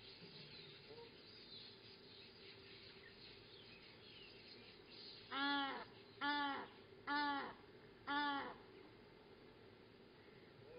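A bird calling four times, loud calls evenly spaced a little under a second apart, each about half a second long and rising then falling in pitch.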